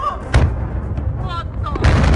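Blasts from the 2015 Tianjin explosions: a sharp blast about a third of a second in, then a second, louder blast near the end that runs on as a deep rumble.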